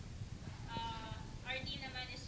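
A person talking, with a steady low room rumble underneath; the words are not made out.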